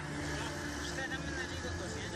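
Men speaking Chinese in short remarks over the steady low drone of a boat's engine.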